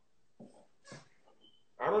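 A pause in a man's talk over a phone livestream, broken only by two faint short sounds, before his voice comes back near the end.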